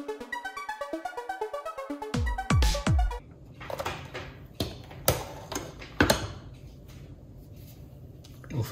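Background electronic music for about two seconds, ending in a few loud falling swoops. Then thick cake batter is handled in a stainless steel mixing bowl: several sharp knocks against the bowl and quieter scraping.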